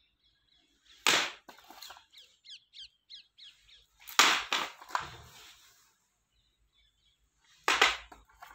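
Plastic audio cassette cases knocking and clattering as they are handled: three sharp clacks a few seconds apart, each with a few smaller knocks after it. A quick run of small bird chirps sounds between the first two.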